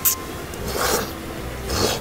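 An extra-wide, flat hand-cut noodle being slurped up in short, hissing pulls, two of them about a second apart.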